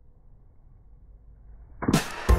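Faint low rumble of wind, then a golf club swinging down and striking a ball out of a puddle, with a sudden loud hit and splash near the end.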